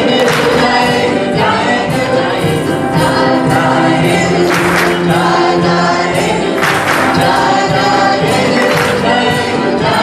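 Live worship band music with a group of voices singing, over keyboard and piano, with a sharp accent about every two seconds.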